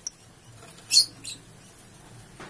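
A mouse squeaking: a short, sharp, high squeak at the very start, a louder one about a second in and a fainter one just after it, over a faint low hum.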